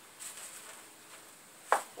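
Faint rustling and handling of the plastic wrapping around a wooden bow stave, with one sharp click about three-quarters of the way through.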